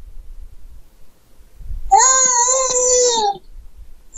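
A child's voice over a video call, holding one drawn-out vowel at a single high, level pitch for about a second and a half, beginning about two seconds in.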